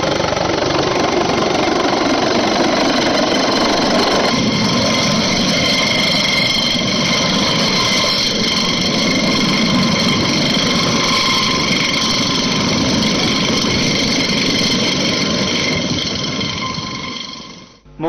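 Helicopter hovering low and setting down: a loud, steady high turbine whine over the rushing noise of the rotor, fading out near the end.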